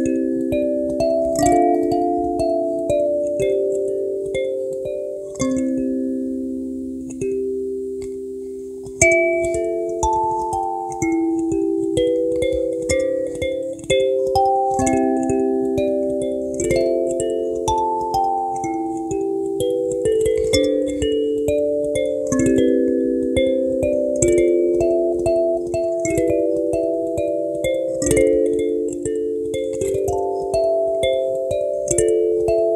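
Handmade purpleheart-wood kalimba played with the thumbs: a slow melody over chords, each plucked metal tine ringing on and fading, with a short lull about eight seconds in before a louder note.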